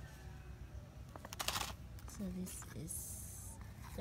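Plastic wax-bean pouch crinkling as it is handled, in short rustles, with a brief voiced sound about halfway through.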